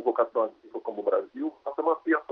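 A man speaking Portuguese, his voice thin as if coming through a video call.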